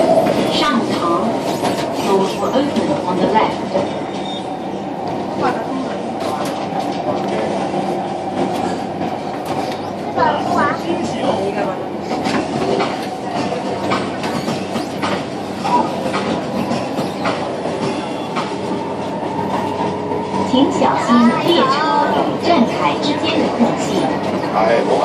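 Cabin noise inside a CSR Nanjing Puzhen metro car running on elevated track: a steady rumble of wheels and motors with short rail clicks throughout.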